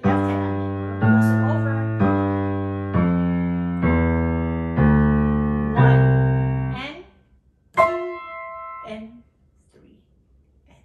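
Piano played with both hands, one note or chord struck about every second and left to ring and fade. After a short gap, a last chord is struck near the end.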